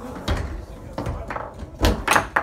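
Foosball being played on a Tornado table: a quick string of sharp knocks and clacks from the ball, the plastic players and the rods, the loudest just before the end.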